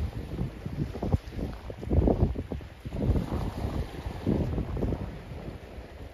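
Wind buffeting the microphone in irregular low gusts, swelling and dropping several times.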